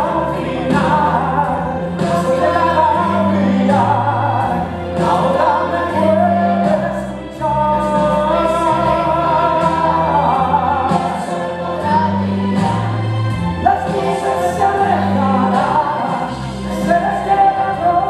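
Stage-musical song: a man's voice and a boy's voice sing over an accompaniment with a bass line and choir-like backing.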